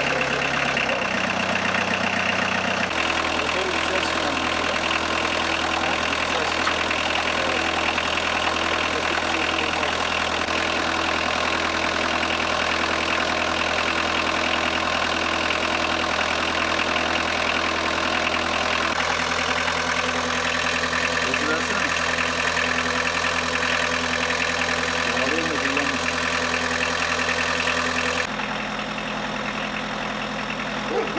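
Car engine idling steadily, heard in several spliced stretches.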